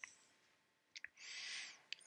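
Near silence with a few faint clicks and a soft breath drawn in, lasting about half a second, near the middle.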